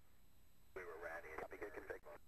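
Short speech over a radio link, starting about three-quarters of a second in, with a narrow, band-limited sound over a low steady hum.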